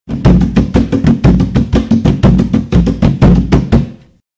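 Drums playing a fast, even beat of about six strokes a second, in jongo style, heavy in the low end; the drumming starts and stops abruptly.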